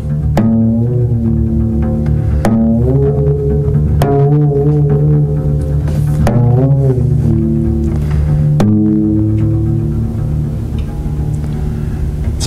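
Contrabass played in imitation of a sitar over a tambura-style drone. A steady low drone note sounds throughout, while a handful of plucked melody notes, roughly every two seconds, bend and slide in pitch above it.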